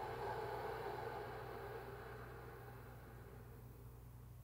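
A long, slow exhale through the nose as part of a yogic three-part breath, a soft hiss that fades away over about two and a half seconds, with a steady low hum beneath.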